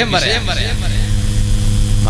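A man preaching in Malayalam into a microphone, his voice carried by a public-address system; the speech trails off partway through over a steady low hum.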